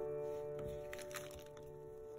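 Soft background piano music, a held chord dying away, with a few faint light clicks and paper sounds as an envelope is handled.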